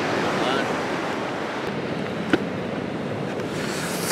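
Surf washing on a sandy beach, a steady hiss of waves with some wind on the microphone, and a small click about two seconds in.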